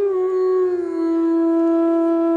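Bansuri, a bamboo transverse flute, playing one long held note that slides down to a slightly lower pitch just under a second in, then holds steady.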